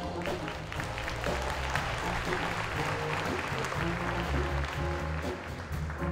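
A jazz band playing with a steady bass line, while audience applause swells over the music through the middle and fades as the horns come back to the fore.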